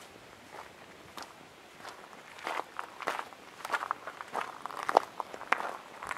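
Footsteps on a gravel driveway, a crunch with each step, faint at first and louder from about halfway through.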